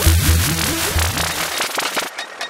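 Deep tech electronic dance music with a pulsing bass beat; about one and a half seconds in the bass drops out, leaving a noisy sweep with fine clicks as the track breaks down.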